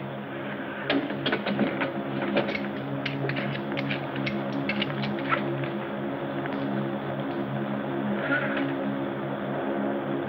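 Steady, low, multi-toned hum of a sci-fi rocket ship's engine sound effect, with a rapid run of clicks as control-panel switches and levers are worked, from about a second in until about halfway through.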